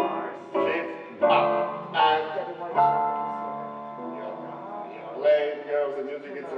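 Slow piano accompaniment for a barre exercise, with chords struck about once a second, each ringing down before the next.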